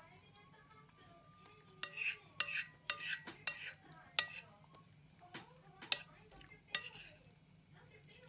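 A metal spoon scraping and clinking against a plate as food is scooped up, a quick run of sharp clinks between about two and seven seconds in.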